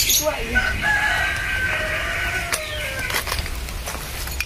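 A bird's long drawn-out call, held for about two seconds and falling slightly at the end, with a brief voice at the start.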